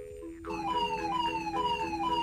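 Electronic beeping from a handheld video-game toy: a string of short falling bleeps, about four a second, starting about half a second in, over a low steady two-note tone. It is the toy's 'game over' signal.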